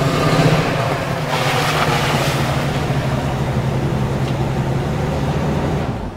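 Ford truck engine running with a steady low hum under a wash of rushing noise.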